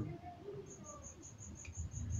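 A cricket chirping faintly in a steady high-pitched rhythm, about five chirps a second, during a pause in a man's talk.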